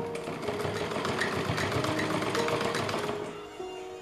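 Sewing machine running, a rapid even clatter of needle strokes stitching through layered fabric for about three seconds, then stopping near the end. Soft piano music plays underneath.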